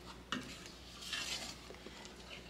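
Wooden spoon stirring thick, hot peanut butter fudge mixture in an enamelled pot: faint scraping swishes, with one light knock about a third of a second in.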